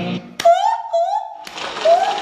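A woman's voice giving two short, high 'ooh' cries, each rising slightly in pitch, after a click. The background music drops out beneath them and returns near the end.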